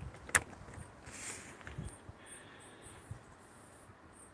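A single sharp click about a third of a second in: a current clamp's push-fit BNC+ connector snapping home into the input socket of a PicoScope 4425A oscilloscope.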